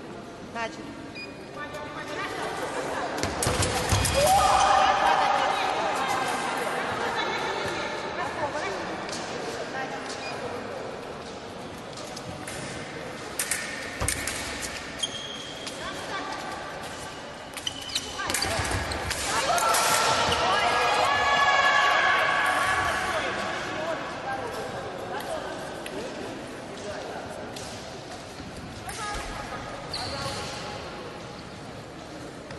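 Fencing footwork thudding and stamping on the piste with short clicks and knocks, in a large echoing hall. Two stretches of loud shouting rise over it, one a few seconds in and one about two-thirds of the way through.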